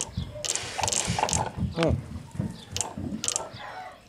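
Solenoid of a homemade dancing water speaker clattering, driven by an amplified song's bass: an irregular run of sharp clacks and low buzzing bursts that starts suddenly.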